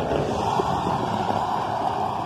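Steady rushing noise of a motor vehicle running along the paved highway, tyres and engine blended together.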